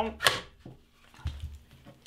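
Handling noise from reassembling an FN PS90's polymer stock and parts on a bench: a brief sliding scrape near the start, then a few light plastic clicks and knocks, with a dull bump a little past the middle.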